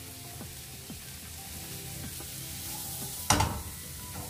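Food frying in a pan on a gas hob, a steady sizzle, with one sudden loud knock a little over three seconds in.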